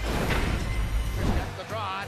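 Sports-broadcast countdown transition sting: a sudden booming hit with a whoosh and music, dying away after about a second and a half.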